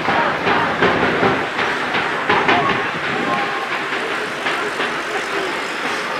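Rugby players' voices shouting calls on the pitch during a scrum, over open-air field noise with irregular sharp knocks.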